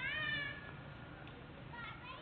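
A short, high-pitched cry that rises and then holds for under a second, followed by a second, shorter cry near the end, over a faint low background hum.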